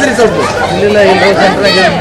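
Speech only: several people talking, their voices overlapping.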